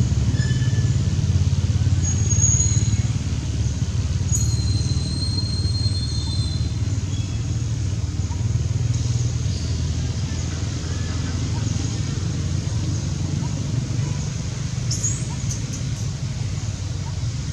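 Steady low outdoor rumble, with a few brief, thin high chirps scattered through it.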